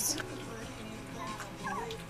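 Five-week-old sheepadoodle puppies whimpering faintly, with one short wavering squeal near the end, over a steady low hum.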